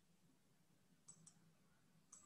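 Near silence with two faint, quick mouse clicks about a second in, switching on a chart analysis view.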